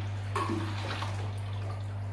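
Water splashing and sloshing as an aquarium siphon tube is dipped into the tank to fill the hose for priming, over a steady low hum.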